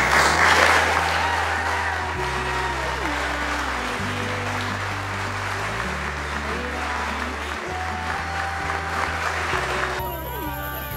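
Congregation applauding in a church, loudest at first and dying away over the next few seconds, over background music with sustained low notes.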